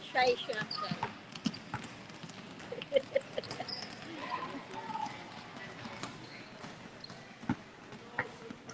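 Basketballs bouncing on a hard court, irregular sharp thumps from several balls, with voices chattering in the background.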